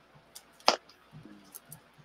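A single sharp click about two-thirds of a second in, with a few faint low sounds around it.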